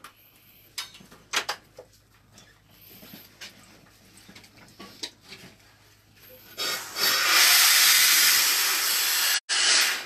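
Light knocks and clicks of handling, then, about six and a half seconds in, a loud steady hiss of compressed air from a Quik-Shot inversion unit as it shoots a cured-in-place pipe liner into the drain line.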